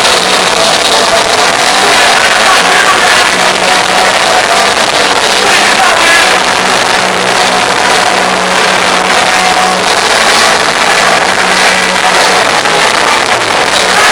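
Live punk rock band playing loud, with distorted guitars and a low note held through most of it.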